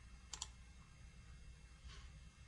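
A single computer mouse click, a quick pair of ticks about a third of a second in, over near silence with a faint low hum.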